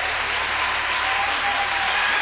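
Audience applauding at the end of a live acoustic guitar piece, with dense, steady clapping.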